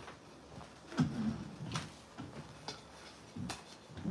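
Scattered knocks and clicks of household items being handled and set down, the loudest a thump about a second in.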